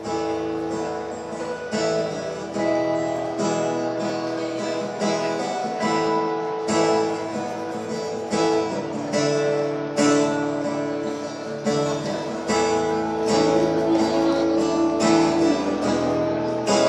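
Two acoustic guitars strummed together in a steady rhythm, playing a song's instrumental opening.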